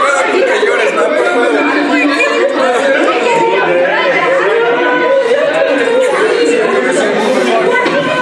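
Several people talking over one another without pause: a jumble of overlapping conversation in a large room.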